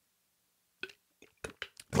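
A pause in a conversation: near silence, then a handful of faint short mouth clicks in the second half as a speaker gets ready to talk, with speech starting at the very end.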